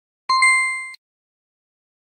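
Bright electronic ding from a learning app's reward screen, sounding once as a star appears, the last of three matching chimes; it fades out within about two-thirds of a second.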